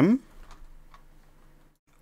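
The end of a spoken word, then a few faint clicks from working a computer's mouse and keyboard.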